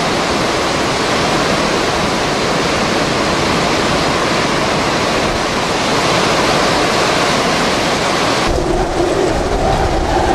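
Hurricane wind and storm surf: a loud, steady rush of wind and waves breaking over a dock. About eight and a half seconds in it cuts to a deeper, rumbling rush of wind, buffeting the microphone, with a low whistling tone.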